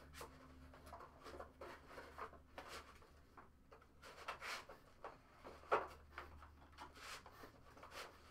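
Faint rustling and scraping of a trading-card box and foil packs being handled, in short irregular strokes, with one sharper stroke about two-thirds of the way in, over a steady low hum.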